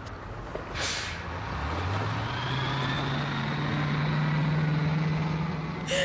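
City bus pulling away: a short hiss of air about a second in, then its engine note rises and holds steady.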